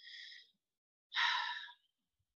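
A woman breathing audibly into a close microphone between spoken sentences: a short faint breath at the start, then a longer, louder sigh-like breath about a second in.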